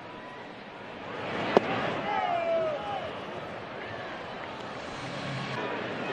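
Ballpark crowd noise, with one sharp pop about a second and a half in: a pitched baseball smacking into the catcher's leather mitt. The crowd's voices swell briefly around the pitch, with a few scattered shouts.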